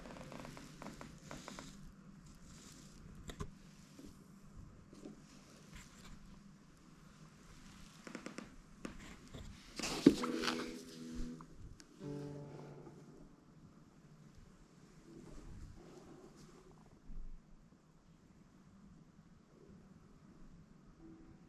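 Handling sounds as a Cordoba Stage nylon-string guitar is lifted out of its padded gig bag: rustling and soft knocks. A sharp knock about halfway through sets the strings ringing briefly, and they sound again for a moment about two seconds later.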